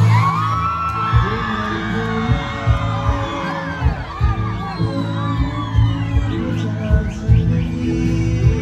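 Instrumental passage of a live Nepali pop song's backing music, a drum beat under gliding melodic lines, played loud over the stage sound system.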